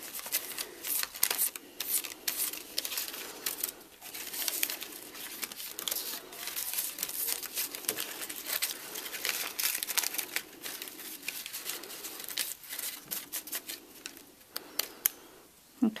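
Hands rubbing loose glitter over a glued paper die-cut on a fluted paper filter: continuous, irregular crinkling and rustling of paper, with small scratchy clicks.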